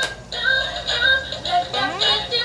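L.O.L. Surprise! Remix toy record player playing the doll's song from its built-in speaker: a pop melody with singing, starting just after a brief click.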